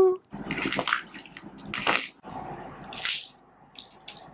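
Hands kneading and squeezing soft purple glue slime: wet squelching and crackling, with three louder squishes about a second apart, the last rising in pitch like trapped air escaping.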